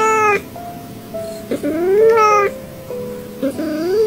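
Cat meme sound clip of a cat's meows: a short call at the start, a longer rising call like a questioning "huh?" about a second and a half in, and another rising call near the end, over background music with steady held notes.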